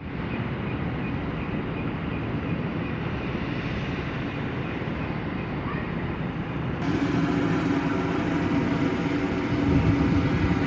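Heavy machinery running steadily: a low mechanical hum under a rushing noise. About seven seconds in it changes abruptly to a louder hum with a clearer low drone.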